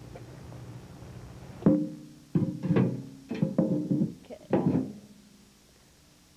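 A welded aluminium planter liner knocking against the stone planter and sand as it is lowered and set in place: about half a dozen hollow knocks over three seconds, each ringing briefly at the same pitch.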